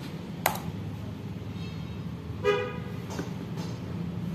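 A vehicle horn gives a short toot about two and a half seconds in, after a fainter brief tone, over a steady low hum, with a couple of sharp clicks.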